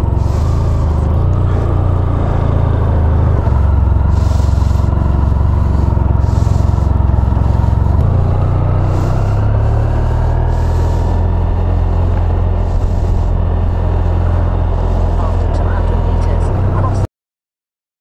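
Honda Crosstourer's V4 motorcycle engine running steadily at low city speed, heard from the bike itself. The sound cuts off suddenly near the end.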